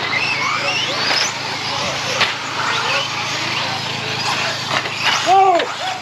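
Radio-controlled mini truggies racing on a dirt track. Their motors give a high whine that climbs in pitch during the first second or so, over steady tyre and running noise. A short voiced sound comes near the end.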